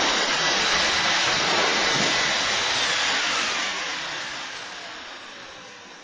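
Air being pumped into an inflatable roof-eave ice-dam sleeve as it swells: a loud, steady rush of air that fades away over the second half, with a faint whistle falling in pitch.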